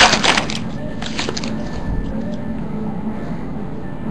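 A foil trading-card pack crinkling as it is torn open, in the first half-second, followed by a steady low hum.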